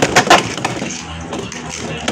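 Beyblade X spinning tops clattering against each other and the plastic stadium: a quick run of sharp clicks and knocks in the first half second, then a steadier spinning noise with a few more knocks.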